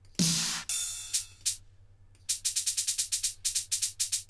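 High drum-machine percussion samples in a music program, previewing as notes are drawn in: one louder, longer hit just after the start, a few single hits, then a quick run of short, high hits at about ten a second in the second half.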